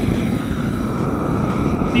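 Hose-fed propane torch running with a steady rushing flame as it is swept over wooden boards, charring them.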